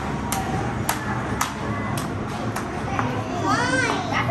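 Busy arcade din of voices, children's chatter and game sounds, with a row of sharp ticks about twice a second and a swooping electronic-sounding tone near the end.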